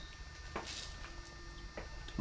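Quiet workshop room tone with a low steady hum, a short soft hiss under a second in and a faint click near the end.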